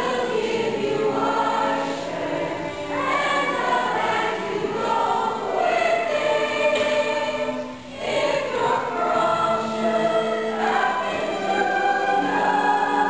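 A cast of young actors singing together as a chorus in a stage musical, in long held phrases with a short break about eight seconds in.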